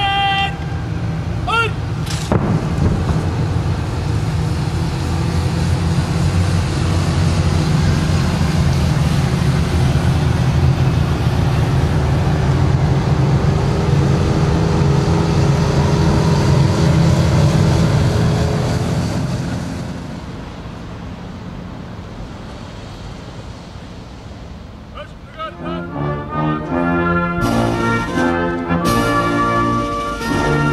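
A loud, sustained low rumble that swells for about twenty seconds and then fades away. Near the end a military brass band strikes up.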